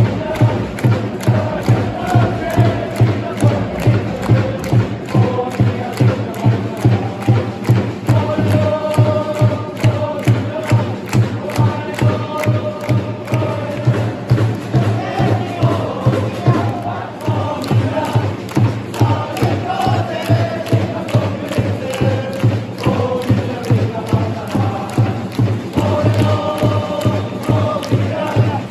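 A football supporters' group chanting in unison to a bass drum beating about twice a second.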